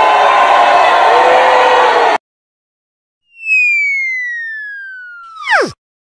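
Crowd cheering that cuts off abruptly about two seconds in. After a second of silence, a whistle-like tone glides slowly down in pitch, then plunges steeply to a low pitch and stops just before the end: a cartoon falling-whistle sound effect.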